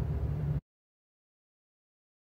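Low steady outdoor background rumble that cuts off suddenly about half a second in, leaving total silence.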